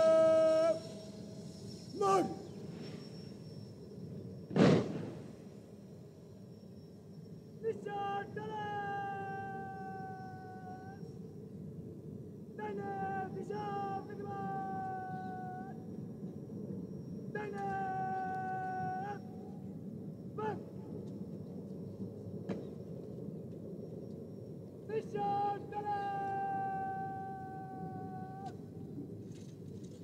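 Shouted parade-ground words of command, drawn out into long held calls that sag slightly in pitch. They come one after another about every four to five seconds. One sharp impact sounds about four and a half seconds in.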